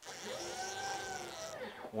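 Stepper motor driving the Y axis of a CNC router, jogged from a handheld MPG pendant: a whine that starts suddenly, rises in pitch, falls again and stops after about a second and a half. The axis is moving now that its maximum and minimum travel settings have been corrected.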